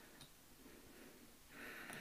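Near silence: room tone, with a faint short hiss near the end.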